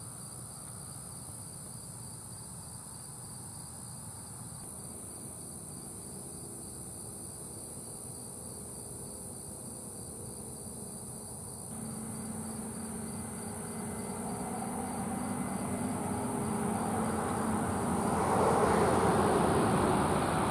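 A steady, high-pitched chorus of crickets trilling, with the rumble of road traffic rising in the second half and loudest near the end.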